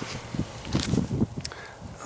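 Low wind rumble on the microphone with a few light knocks and rustles scattered through it.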